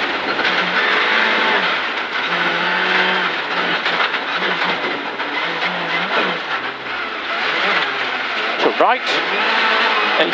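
Rally car engine and gravel noise heard from inside the cabin at speed, the engine note stepping up and down in pitch through gear changes. A co-driver's call comes in near the end.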